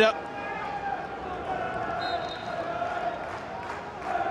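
Steady football-stadium crowd noise, with a faint drawn-out chant running through it.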